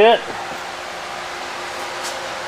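A spoken word is cut off at the start, then a steady, even background hiss with no distinct events.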